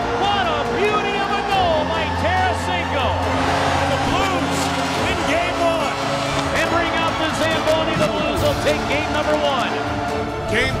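Background music with held bass notes, under many overlapping excited shouting voices from an arena crowd.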